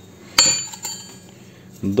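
A single sharp metallic clink about half a second in, thick steel plate striking metal, ringing briefly with a few high tones before dying away.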